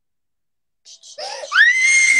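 A baby screaming. After about a second of silence, a cry sweeps sharply up in pitch and holds on one shrill note. His mother thinks he is probably fussing because he is teething.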